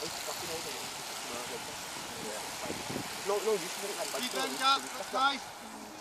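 Steady outdoor background noise, then from about three seconds in a few raised voices calling out, unclear words.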